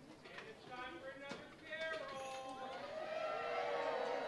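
Band instruments sounding scattered, held warm-up notes at several pitches, overlapping more thickly toward the end, over a murmur of audience voices.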